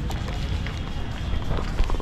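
Steady low rumble of wind and handling noise on a body-worn action camera's microphone while walking, with faint voices in the background.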